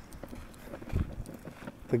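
Footsteps of a person walking on packed dirt and gravel: a few soft steps, the loudest about a second in.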